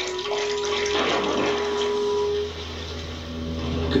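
Cartoon sound effect of splashing water as a figure runs into the sea, with a held music note over the first half.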